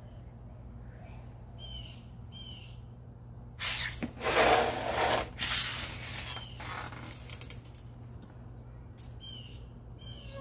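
Rustling and handling of a fabric backpack, a few seconds of it starting a little past a third of the way in, over a steady low hum. A few faint short high chirps come before and after it.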